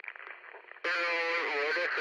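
A person's voice heard through a radio or headset, thin and narrow-sounding, starting about a second in after a short stretch of quieter hiss.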